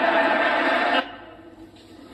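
A roomful of people laughing together, heard through a television speaker; it cuts off suddenly about a second in, leaving only low background hum.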